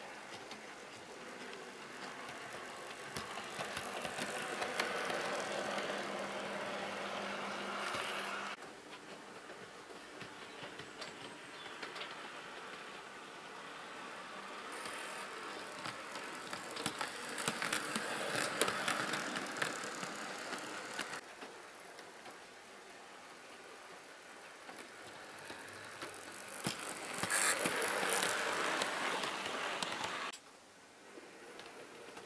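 OO gauge model Class 143 Pacer running on track: its motor whirring and its wheels clicking over the rail joints. The sound grows louder three times as the model comes close, and each time it cuts off abruptly, about a third of the way in, about two thirds of the way in, and at the end.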